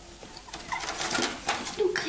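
Plastic game cups and playing cards handled on a wooden tabletop: scattered light clicks and taps, with a few short, soft hum-like sounds, the loudest near the end.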